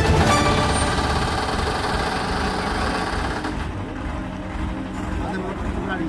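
Several men's voices calling and talking over one another, indistinct, amid a noisy commotion that is loudest in the first few seconds and then eases.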